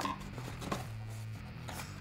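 Faint handling sounds of a box being opened: a few light clicks and rubs over a low steady hum.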